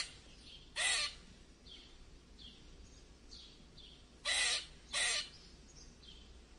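Harsh, caw-like bird calls: three loud short calls, one about a second in and two close together a little past four seconds, with faint high chirps from small birds between them.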